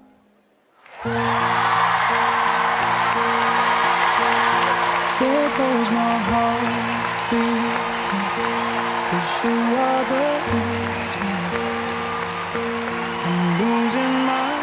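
After about a second of near silence, a studio audience bursts into loud applause and cheering, over background music of long held chords with a slow melody.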